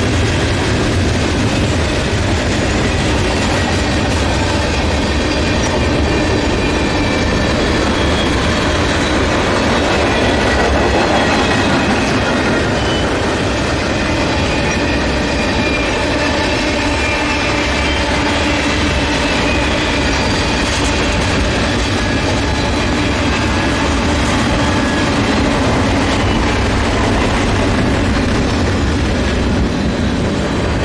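A mixed freight train's cars, boxcars then tank cars, rolling past on steel wheels. The sound is a steady, loud rolling noise, with faint high squealing tones from the wheels on the rails.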